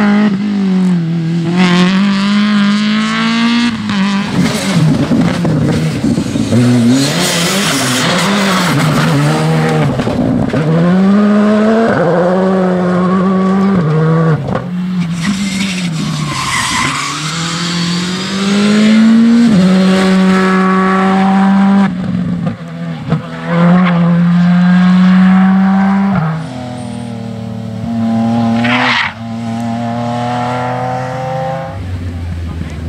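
Rally car engines revving hard through corners, pitch climbing and dropping again and again with the gear changes, as one car after another passes: older BMW 3 Series saloons and a Skoda Fabia R5. A couple of hissing bursts of tyre noise break in.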